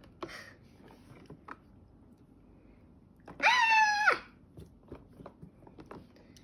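Faint squishing and small clicks of slime being handled with the hands. About three seconds in comes a child's short, high-pitched squeal, held for under a second and dropping in pitch at its end; it is the loudest sound.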